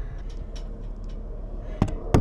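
A steady low background rumble with a few faint clicks, then a single sharp knock near the end as the camera is handled and moved under the boat's hull.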